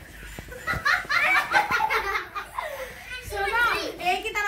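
A woman and girls laughing, with excited chatter, breaking out loudly about a second in after a quieter start with a few light clicks.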